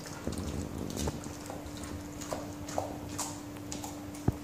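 A Dalmatian chewing lettuce leaves, with irregular wet crunches and sharp clicks as it picks pieces up off a tiled floor.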